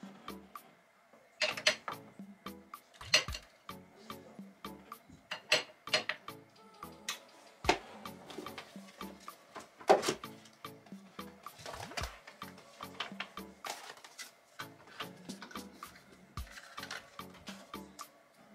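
Background music plays under irregular sharp clinks and knocks of glass perfume bottles and a box being picked up and set down on a dresser. The clinks are the loudest sounds, the sharpest about ten seconds in.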